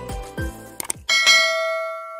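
Background music fades out, then two quick mouse-click sound effects and a single bell chime that rings on and slowly fades.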